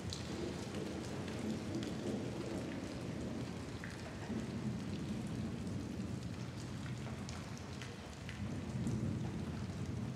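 Steady rain with scattered drop ticks and low rolling thunder that swells around the middle and again near the end: a recorded storm soundscape in a dark ambient track.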